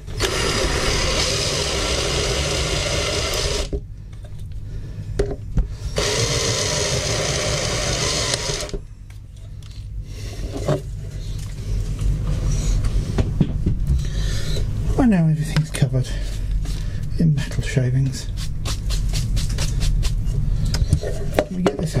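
Cordless drill drilling out rivets in a thin aluminium electronics case, in two runs of about three seconds each with a short pause between; the user suspects the drill bit is bent. After the drilling come lighter clicks and scrapes as the metal case is handled.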